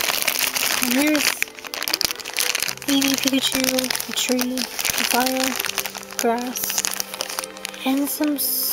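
Thin plastic packaging crinkling and rustling in the hands as a blind-box toy is unwrapped, with a tune of held, swooping notes playing along under it.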